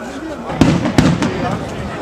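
Daytime fireworks shells bursting overhead: two loud bangs about half a second and a second in, with a smaller crack just after the second.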